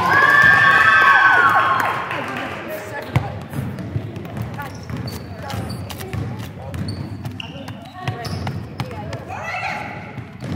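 Basketball game in a gym: a loud voiced shout in the first two seconds, then a basketball bouncing on the hardwood floor with scattered knocks and short high squeaks under voices in the hall.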